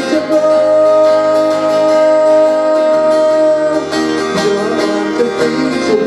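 Live song from a solo singer with a strummed acoustic guitar; a long held note runs for about the first three and a half seconds, then the melody moves on over the guitar.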